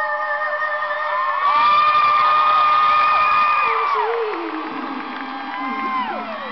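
Live band music in an arena, with the audience cheering and screaming over it. The screaming swells loudly about a second and a half in and fades after about four seconds.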